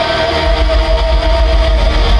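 Glam-metal band playing live through a festival PA, with electric guitar, bass and drums. A held note fades over the first second and a half while heavy bass comes in about half a second in.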